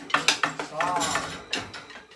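Drumsticks and mallets tapping on a tabletop: a quick run of sharp taps in the first half second, then a few single taps later.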